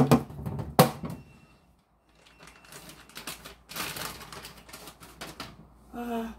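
Two sharp knocks, then an electric snowball ice shaver grinding ice in a fast, dense rattle for about three seconds.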